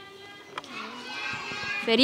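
Faint chatter of children's voices, growing a little louder in the second half.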